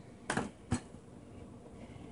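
Two brief knocks about half a second apart, from kitchen items being handled, against a quiet room.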